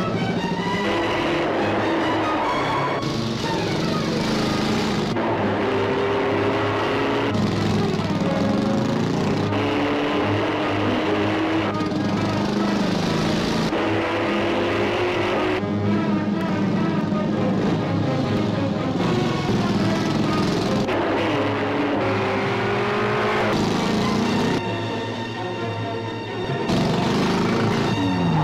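Dramatic film score mixed with car-chase sound effects: car engines running and tyres squealing, with pitch glides rising and falling throughout. The sound dips briefly near the end, then comes back as a car skids.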